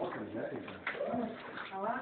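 Indistinct voices of several people talking, with no clear words.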